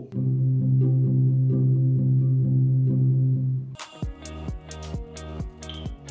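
Playback of a work-in-progress electronic pop track: a loud, sustained low chord holds for nearly four seconds, then cuts to a beat of deep kick drums and crisp hi-hats with short plucked notes over it.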